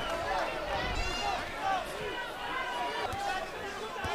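Several indistinct voices from the arena crowd and ringside, overlapping, with no voice in front and no single loud event.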